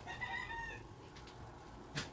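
A single short, high-pitched animal call, under a second long near the start, over a faint low background hum. A sharp click comes at the very end.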